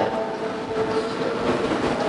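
Steady background noise with a faint held tone underneath, no voice.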